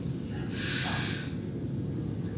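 A person taking one short, sharp breath or sniff through the nose, about half a second in, over a steady low background rumble.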